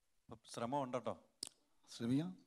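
A man speaking, with one short, sharp click about one and a half seconds in.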